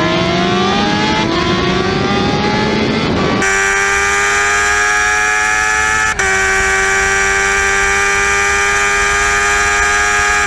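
Yamaha R1 sportbike inline-four engine at high revs under hard acceleration, its pitch rising steadily through one gear. A little over three seconds in, the sound cuts abruptly to a steady, high, whining engine note held at near-constant high revs, with a brief dropout about six seconds in.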